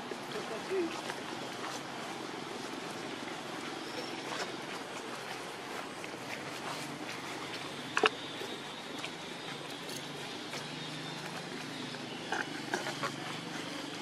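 Outdoor background with indistinct human voices. A sharp click comes about eight seconds in, and a few smaller knocks come near the end.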